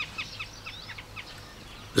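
Small birds chirping: a quick run of short, falling high chirps over the first second or so, then fainter.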